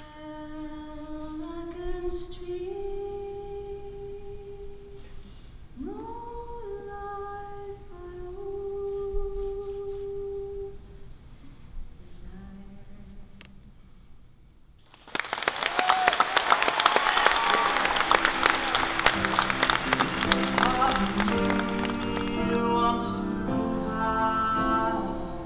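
A woman sings alone, unaccompanied, in slow held notes. About fifteen seconds in, an audience breaks into loud applause, and near the end acoustic instruments begin to play.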